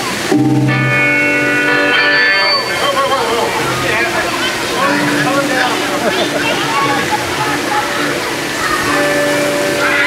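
Live band between songs: a held chord rings out for about two seconds near the start, then a few scattered sustained notes over crowd chatter.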